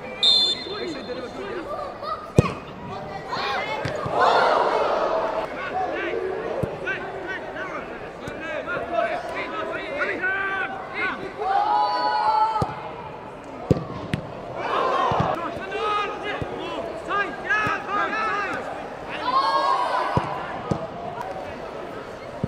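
Live match sound from a football pitch: players shouting and calling to each other, with the sharp thud of the ball being kicked several times. A short referee's whistle blast comes right at the start.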